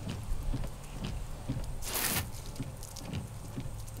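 Trico Neoform beam wiper blades sweeping across a wet windshield, heard from inside the cab over a steady low hum, with faint scattered clicks and one louder swish about halfway through.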